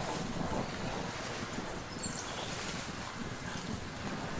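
Steady wind noise on the microphone, with a faint, brief high chirp about halfway through.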